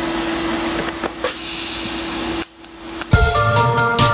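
A steady hiss with a low steady hum, cut off sharply about two and a half seconds in. Background music with held chords and a beat starts just after three seconds.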